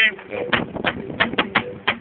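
A quick, uneven drumming pattern struck on homemade plastic pail drums: about six sharp hits, roughly three a second.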